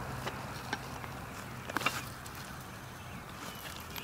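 Quiet outdoor background with a few faint clicks and rustles from a small child moving on the gravel ballast beside a rail, with a slightly louder cluster of clicks just before halfway.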